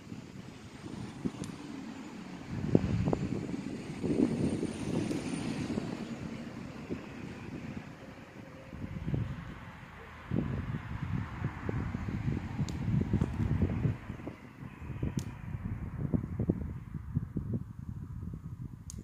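Wind gusting on the microphone: an uneven low rumble that swells and dies away several times. A few sharp clicks come in the second half.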